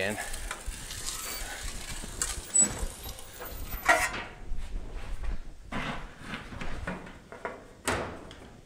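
Sheet metal being run through a slip roller. A steady rasping rumble fills the first four seconds, then a sharp clank about four seconds in, followed by several lighter knocks as the metal is handled.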